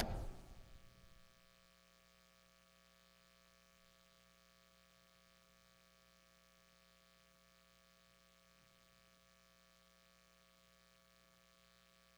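Near silence with a faint, steady electrical mains hum. A sound dies away in the first second or so.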